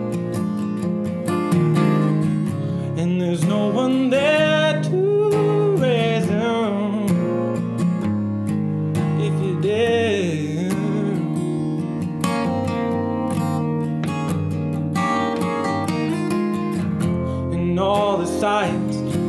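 Acoustic guitar strummed in a steady rhythm, with a man's voice singing over it for the first ten seconds or so, then the guitar alone.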